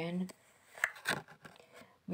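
A woman's voice ends a phrase, then a few short, soft clicks and faint rustles follow at low level before she speaks again.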